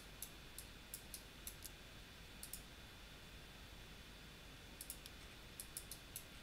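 Faint computer mouse clicks, a quick run of about six in the first two seconds, a pause, then another run near the end, as nodes are picked one after another in the software. A faint steady high tone sits under the clicks.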